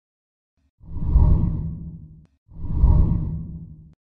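Two deep whoosh sound effects for an animated channel-logo intro, each about a second and a half long, swelling quickly and then fading away.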